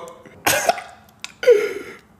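A man's two short coughs, about half a second in and again about a second and a half in, with a faint click between them.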